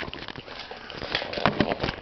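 Scattered light clicks and knocks from hands handling the camera and toy pieces, at an uneven pace.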